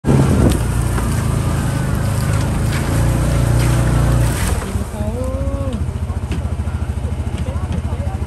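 Side-by-side UTV engine running loudly for about four seconds, then settling to a lower, steady pulsing idle. A brief call from a voice comes in about five seconds in.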